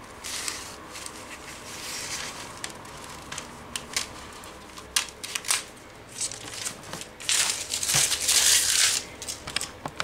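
Scissors cutting through stiff brown pattern paper, with scattered sharp snips, then a louder stretch of paper rustling and crinkling near the end as the cut pieces are handled.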